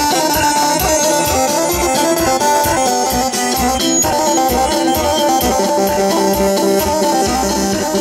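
Bosnian izvorna folk music for a kolo dance, played loud over loudspeakers: a melody line over a steady, regular beat.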